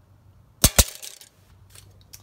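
Two sharp metallic clinks in quick succession about half a second in, each with a brief ring, as the steel tape measure is shifted against sheet metal, then a few faint small knocks.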